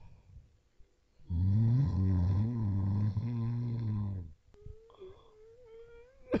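A voiced cartoon-style snore: a long, low, rasping snore lasting about three seconds, followed by a thin, wavering whistle on the out-breath.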